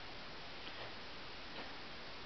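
Quiet, steady room tone with a couple of soft ticks, about a second apart.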